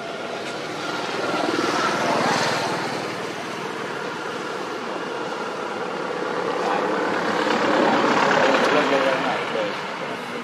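Engine drone that swells about two seconds in, eases off, and swells again near the end, like something motorized passing by.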